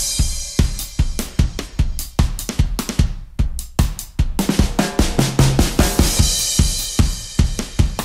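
Background music with a driving drum-kit beat: kick, snare and hi-hat.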